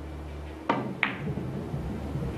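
A cue tip strikes the cue ball, then about a third of a second later comes a sharp click with a short ring as the cue ball hits an object ball on a carom billiards table. A low steady hum runs underneath.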